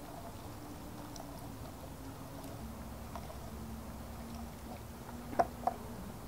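Faint wet stirring and dribbling: a plastic brewing paddle working wort through a fine mesh strainer, with wort running out the bottom and splashing into the wort in a plastic bucket. A faint steady low hum runs underneath.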